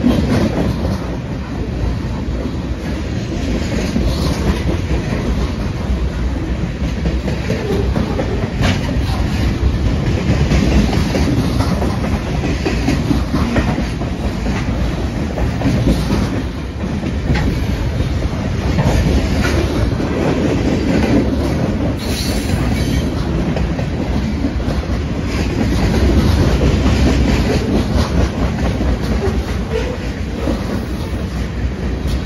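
Freight train of boxcars rolling past close by: a steady rumble of steel wheels on rail, with scattered clacks and knocks as the cars go over the rail joints.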